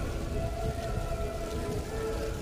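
Christmas music heard from across the square: long held notes that change pitch about half a second in and again near the middle, over a steady low rumble.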